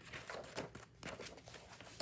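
Faint rustling and light ticks of hands handling craft supplies and packaging on a cutting mat.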